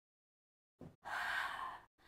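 A woman's audible breath out, a noisy exhale lasting just under a second, starting about halfway through, as she rocks up from a rolled-back position to balance in an open leg rocker.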